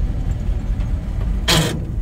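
The 1948 Ford truck's engine and drivetrain rumbling low and steady inside the cab while driving, with one short harsh noise about one and a half seconds in. The truck's gearbox keeps jumping out of gear.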